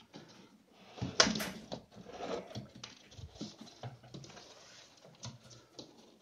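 Brushtail possum's claws scrabbling and scratching, heard as an irregular run of light scratches and taps with a louder knock about a second in.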